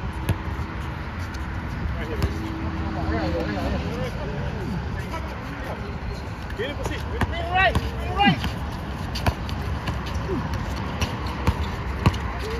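Outdoor basketball court sound: indistinct calls and talk from players, a few sharp thuds of a basketball bouncing on the hard court, over a steady low traffic rumble.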